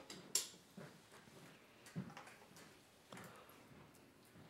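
Quiet room with a few faint, short clicks and rustles of small handling noise, the sharpest about a third of a second in.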